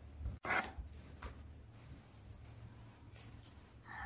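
Faint handling of toy packaging and plastic parts: a short rustle about half a second in, then a few faint scrapes over a steady low room hum.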